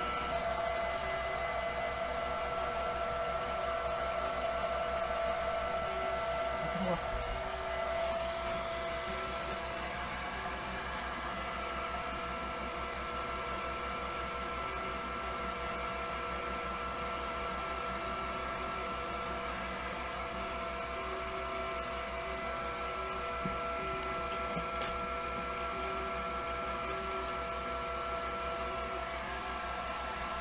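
Hand-held hair dryer running steadily, a rush of air with a steady motor whine.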